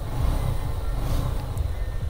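TVS Apache motorcycle engine idling steadily.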